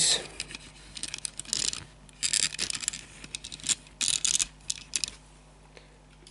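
A small die-cast metal toy car handled and set down on a tabletop: scattered light clicks, taps and scrapes in short clusters, dying away near the end.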